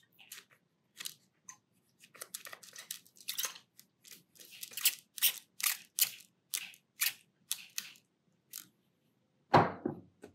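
A series of short scratchy strokes, about two a second, as a paintbrush works against watercolor paper. Near the end there is one louder knock.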